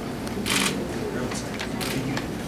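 Camera shutters clicking: a short run of clicks about half a second in, then two more single clicks, over the murmur of people talking in the room.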